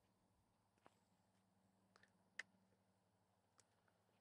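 Near silence, broken by four faint clicks, the sharpest a little past halfway.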